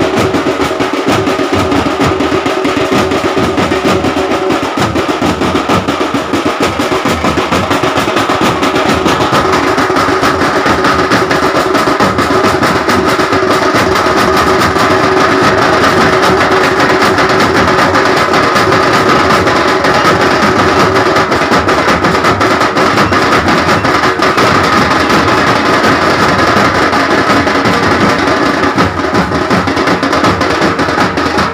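Loud drum-led music that the dancers move to: fast, dense, unbroken drumming with steady held notes over it.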